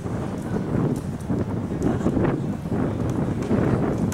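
Wind buffeting the camera microphone, an uneven low rumble that swells and drops.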